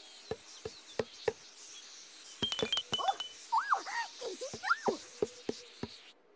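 Light clicking footsteps over a steady high hiss of garden ambience with birdsong. In the middle, several chirps rise and fall.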